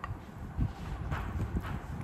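A few light knocks and taps, about half a second apart, from a utensil and a glass dish being handled on a table.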